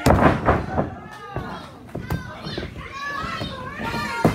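A wrestler's body slammed onto the wrestling ring mat: one loud thud at the very start, with a couple of smaller knocks from the ring a second or two later. Spectators' voices shout and call out over it.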